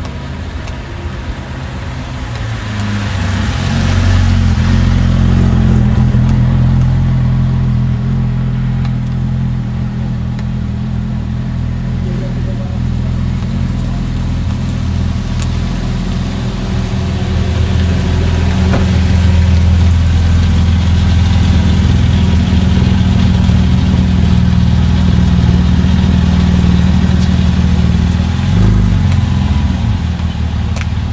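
Porsche 911 GT flat-six engines running at low revs as the cars roll slowly past, a steady deep engine note that grows louder a few seconds in. Near the end the revs briefly drop and rise again.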